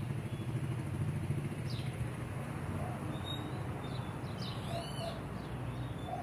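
A few short, high bird chirps over a steady low mechanical hum.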